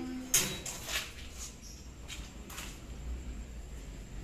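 Sliding metal bolt latch on a welded-mesh kennel gate being worked by hand: a sharp metallic clack about a third of a second in, a softer click about a second in, then a few faint knocks.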